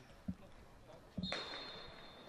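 One long, steady blast of a referee's whistle starting a little over a second in, signalling a penalty kick to be taken, with a dull thump just before it.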